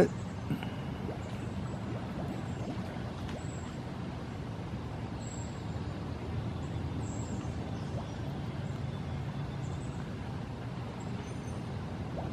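Steady low rumble of distant road traffic, with a few faint, short high notes over it.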